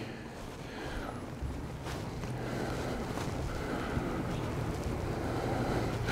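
Faint, steady low rumble and hum of background noise that grows slowly louder, with a couple of soft knocks.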